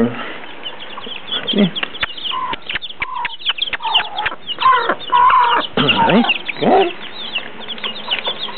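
A mother hen clucking in short, repeated calls while her chicks peep constantly in high, thin chirps. A scatter of sharp ticks comes from beaks pecking corn off the concrete.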